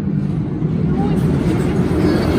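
Low rumble of an RMC hybrid roller coaster train running on its steel track during an empty test run, growing steadily louder.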